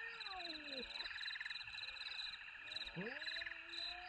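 Domestic cat yowling in a standoff with a marten: a long wavering wail that slides down and fades just before the one-second mark, then sweeps up again about three seconds in and holds steady. A steady pulsing chorus of chirping calls runs underneath.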